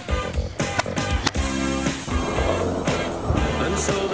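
Skateboard wheels rolling on a concrete ramp, heard under a music track.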